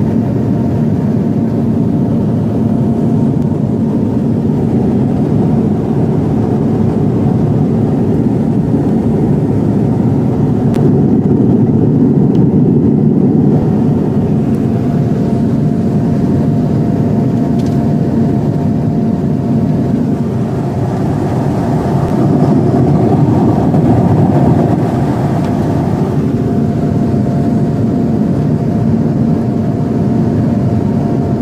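Cabin noise of a Pilatus PC-12 NG in flight: the steady drone of its single Pratt & Whitney PT6A turboprop engine and propeller, mixed with airflow rush, with a thin steady whine above it that fades out for a few seconds past the middle.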